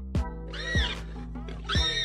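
Background music with a deep beat. Over it, an animal cries out twice, each cry rising and falling in pitch, from a leopard and a wild boar fighting.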